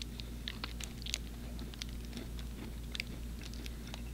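Chewing on a soft stroopwafel, with no crunch, heard as scattered faint mouth clicks over a steady low hum.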